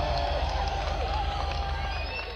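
Rock concert audience shouting and whistling as a song ends, over a steady low hum from the stage PA, the whole slowly fading.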